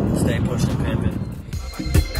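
Low road rumble inside a moving car's cabin, which drops away about one and a half seconds in as reggae music with a steady bass line starts.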